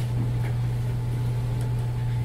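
A steady low hum over faint room noise.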